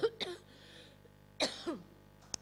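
A woman coughing and clearing her throat, two short bursts, the second about a second and a half in, after a sip of mate went down the wrong way.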